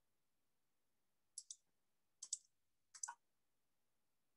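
Faint clicking at a computer: three quick double clicks, one a little after a second in, one past two seconds, one near three seconds.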